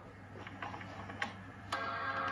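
Apple PowerBook G4 startup chime: a steady chord that sounds near the end, when the laptop powers on. A few faint clicks come before it.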